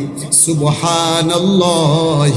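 A man's voice chanting in the drawn-out, melodic intonation of a Bengali waz sermon, holding long notes with a wavering pitch toward the end, amplified through a public-address system.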